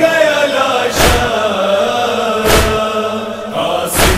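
Nauha lament: a chorus of voices chants a held, wavering melody between sung lines. A heavy matam (chest-beating) thump keeps the beat about every second and a half.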